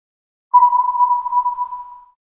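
A single steady electronic beep, one pure high tone like a test tone, starting about half a second in and lasting about a second and a half.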